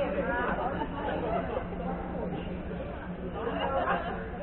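Indistinct chatter of several voices in a gym, over a steady low hum.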